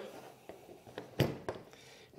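A few light clicks and taps of a plastic remote-control handle being handled and shifted on a tabletop, the loudest a little past a second in.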